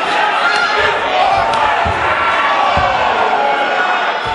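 Fight crowd in a hall shouting and yelling over each other during the bout. A few dull thuds come about one, two and three seconds in.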